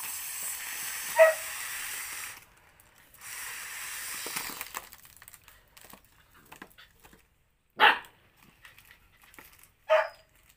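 A gold foil number balloon being blown up by mouth: two long breathy blows of about two seconds each, then faint crinkling of the foil as it is handled. Three short, loud sounds cut in: about a second in, near eight seconds, and at the very end.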